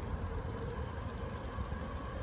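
Low, steady rumble of distant city traffic.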